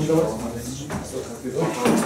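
Several people talking at once, indistinctly, in a room, with a sharp knock about a second in and another near the end.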